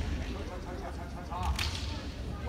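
A kendo bout at close quarters: a short kiai shout and a sharp clack of bamboo shinai about a second and a half in, over gym-hall background noise.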